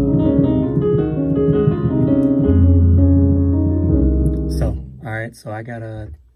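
Piano sound played on an electronic keyboard: sustained chords over a deep bass note, fading out about four and a half seconds in. A man's voice follows near the end.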